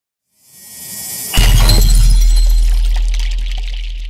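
Intro sting sound effect: a whoosh swells for about a second, then a sudden hit with a deep bass boom and a bright, glassy shimmer that slowly fades.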